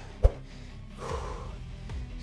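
Quiet background music, with a single sharp thump just after the start and a soft breath about a second in.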